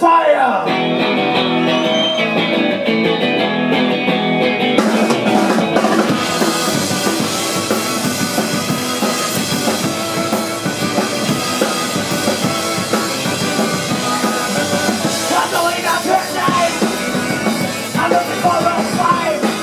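Garage punk band playing live, launching into a song: held guitar chords with no drums for the first few seconds, then the drums come in about five seconds in and the full band plays loud and fast.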